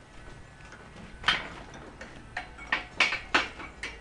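A few sharp knocks and clinks of hard objects, the loudest about a second in, then several more in quick, irregular succession in the second half.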